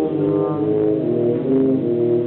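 Tuba and euphonium quartet playing together: low brass parts sound in harmony, holding notes that change about every half second.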